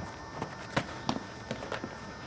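Footsteps of people running and stepping on a grass lawn: a string of light, irregular taps and thuds, about half a dozen in two seconds.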